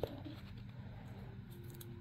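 Quiet handling of a small clear plastic bead bottle with a screw-top lid, with a few faint light ticks near the end.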